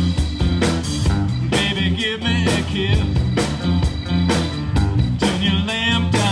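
Live rock band playing: a steady drum beat under a moving bass line and electric guitars, with bending, wavering notes at times.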